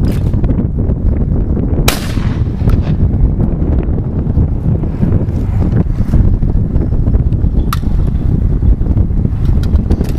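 A single shotgun shot about two seconds in, its report trailing off, over heavy wind buffeting the microphone.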